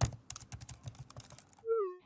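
Rapid, irregular typing on a computer keyboard, followed near the end by a short tone that falls slightly in pitch.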